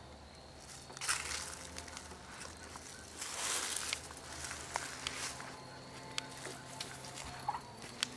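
Quiet outdoor background with a faint steady low hum. Soft rustles and scuffs swell about a second in and again between three and four seconds, with a few small clicks.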